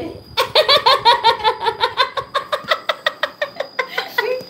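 A woman laughing heartily: a long run of quick, high "ha" pulses, about six a second, tapering off toward the end.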